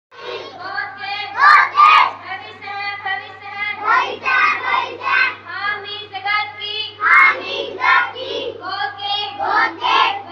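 Young female voices singing a melodic song into stage microphones, amplified through a PA, with held notes and a steady low hum underneath.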